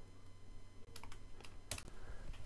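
Several faint, separate key clicks, the loudest near the end: numbers being keyed into a calculator to work out a result.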